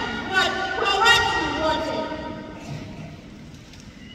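A boy reading aloud into a handheld microphone, then a pause for about the last second and a half.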